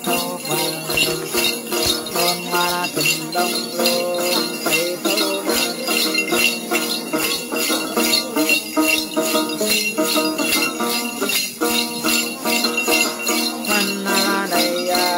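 A đàn tính, the long-necked gourd lute of Tày Then singing, plucked in a running melody. A cluster of jingle bells is shaken in a steady beat of about three strokes a second.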